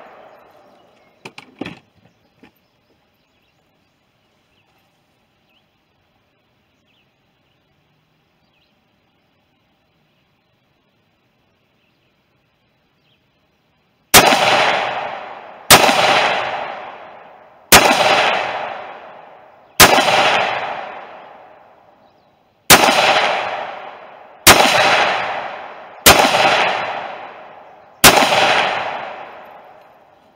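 Semi-automatic AR-15-style rifle fired eight times, roughly every two seconds, each shot dying away in a short echo. A few small metallic clicks from handling the rifle come about two seconds in, followed by a long quiet stretch before the shooting starts.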